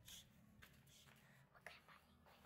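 Near silence with faint whispering close to the microphone, and one short sound near the end.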